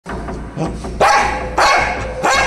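A dog barking: two loud barks, the first about a second in and the second about half a second later.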